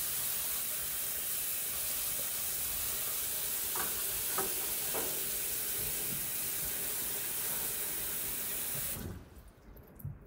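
Kitchen tap running a steady stream of water into a bowl of strawberries in a stainless steel sink, with a few faint knocks midway as the water runs. The water is shut off about a second before the end.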